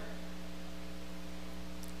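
Steady electrical mains hum, a low buzz made of several fixed tones, with faint hiss underneath.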